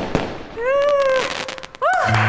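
Firework-like burst sound effect in a pause of the music: a crackling burst that fades, then a pitched glide that rises and sinks, and a short second rising glide near the end.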